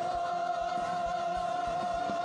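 Adult choir with orchestra holding one long sustained chord, over a steady low beat of about three to four pulses a second.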